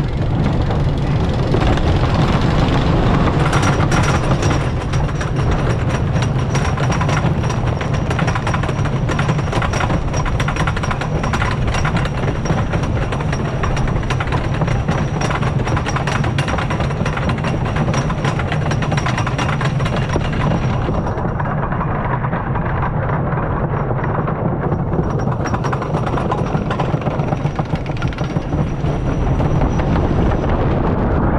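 Ravine Flyer II wooden roller coaster train climbing its chain lift hill: a steady low rumble of the lift chain under rapid, even clacking. The clacking thins out about two-thirds of the way through as the train nears the crest.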